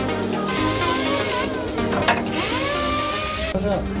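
Electronic dance music, with a power tool running for about three seconds over it during work on the front suspension.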